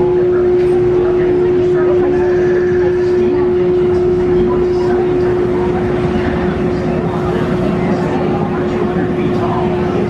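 A loud, steady machine hum holding one pitch throughout, with people's voices chattering around it.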